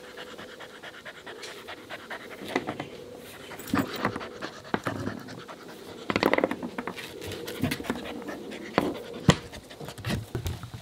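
Working-line German shepherd puppy panting, with scattered small clicks and knocks from gnawing a chew toy and from paws on the wooden floor close by.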